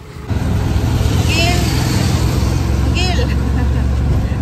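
Auto-rickshaw engine running steadily with a loud low rumble, heard from inside the moving cabin; it comes in suddenly just after the start.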